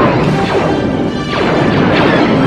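Sci-fi battle soundtrack: blaster shots with falling-pitch zaps over loud crashing impacts and music.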